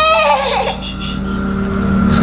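A baby's high-pitched squeal, held on one pitch and then falling away about half a second in.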